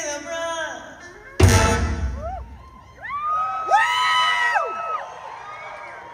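Live concert audience cheering and whooping, many voices rising and falling in pitch, as a sung phrase ends. A sudden loud burst close by about a second and a half in.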